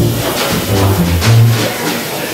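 Small jazz group playing, with a plucked double bass walking through separate low notes and regular cymbal strokes over it.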